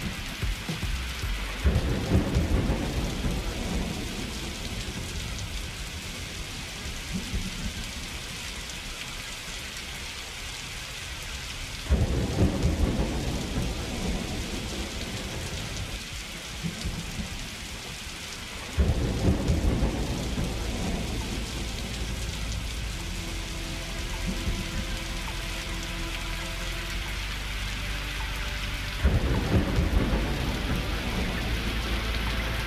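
A rain-and-thunder recording playing as an ambient texture in an electronic DJ mix. Rain hiss runs steadily, and rumbles of thunder break in suddenly four times and die away. Faint sustained synth tones come in during the second half.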